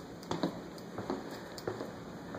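Footsteps on a hard, polished floor: a few light, irregularly spaced clicks over a faint steady hum.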